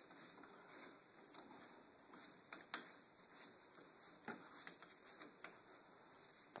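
Near silence with a few faint, sharp clicks of metal hand tools handled against an ATV's brake caliper.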